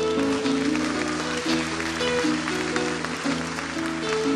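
Acoustic guitar playing sustained chords while an audience applauds over it.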